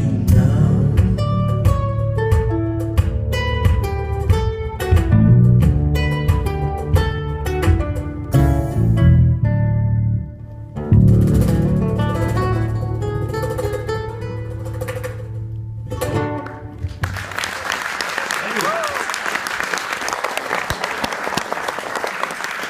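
Solo acoustic guitar playing plucked notes and chords as a song closes, with a short break about halfway through. About three-quarters of the way in the guitar stops and audience applause takes over.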